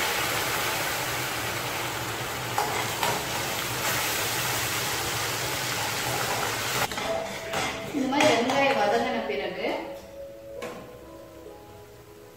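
Hot oil in a kadai sizzling hard the moment a liquid is poured in, a loud steady hiss that dies down after about seven seconds, with a few light ladle clinks against the pan.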